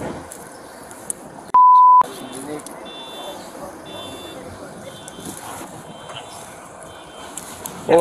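A censor bleep: one steady, high electronic tone lasting about half a second, about a second and a half in, with all other sound cut out beneath it, over faint outdoor background noise and distant voices.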